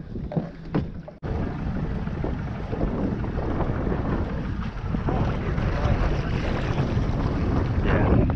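Steady wind noise buffeting the microphone over choppy water on an open boat, starting abruptly about a second in.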